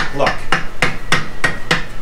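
A boot kicking the sheet-metal muffler heat shield of a Walker mower again and again, a quick run of knocks about four a second that shake the whole mower. The shield, remounted with a strip of scrap aluminum and bolts, stays solid.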